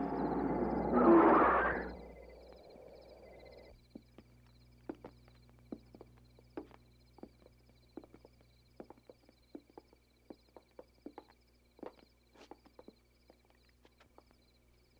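A car's engine noise surges about a second in, then dies away and stops about four seconds in. Scattered footsteps and small knocks follow, over a steady chirping of crickets.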